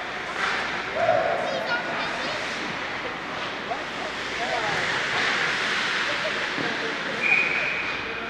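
Indoor ice hockey game: skating and stick noise and scattered shouting voices over a steady rink background. Near the end comes one short, steady referee's whistle blast.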